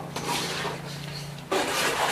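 Dry coconut shells rubbing and scraping as they are handled at the stove, getting louder about one and a half seconds in, over a steady low hum.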